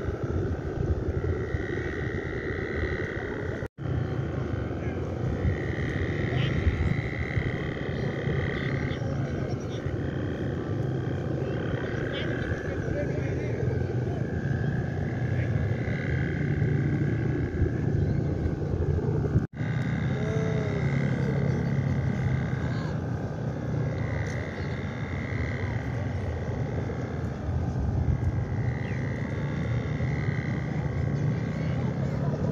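Bamboo hummers (guangan) on Balinese kites droning overhead, a high moaning hum that swells and fades every few seconds. Under it runs a steady low rumble of wind on the microphone.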